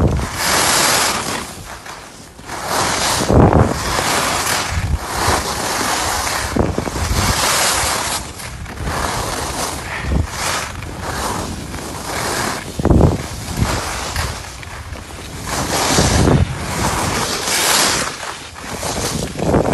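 Wind rushing over the microphone of a camera carried by a skier at speed, with the hiss of skis carving on packed snow swelling and fading through the turns and several low buffeting rumbles.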